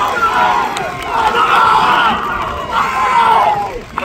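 Crowd cheering and shouting, many voices yelling over one another, swelling louder twice in the middle and again toward the end.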